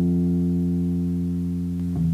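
Digital stage piano holding a low chord that sounds steadily without fading, with a new chord struck near the end.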